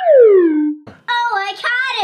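A loud falling-pitch glide of about three-quarters of a second, like a falling whistle, as the one stuck in the tree comes down. After a short gap a child is talking or singing.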